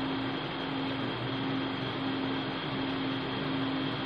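Steady background hum: one constant low tone over an even hiss, with no distinct knocks or scrapes standing out.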